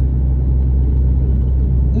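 Diesel truck engine droning steadily under way, with road noise, heard from inside the cab.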